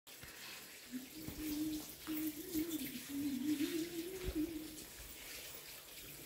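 A Pomeranian dog whining in a low, wavering, drawn-out whine, broken into a few stretches, for about four seconds from a second in. It is a dog's plaintive whine as someone it knows leaves the house.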